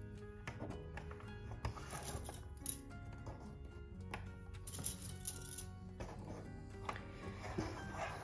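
Soft background music with held tones, and a few light clicks as small plastic sewing clips are snapped onto folded fabric.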